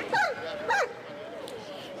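A dog yelping twice, each yelp falling steeply in pitch, then a softer wavering whine.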